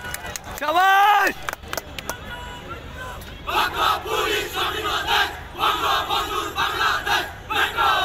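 Police trainees shouting in unison during a PT drill: a single loud drawn-out shout about a second in, then from the middle a rhythmic chorus of many voices shouting together, about two shouts a second, with another loud shout near the end.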